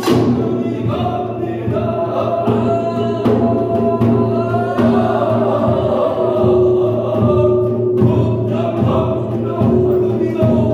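Korean binari ritual chant: sustained, melismatic singing with more than one voice, accompanied by occasional strokes of buk barrel drums.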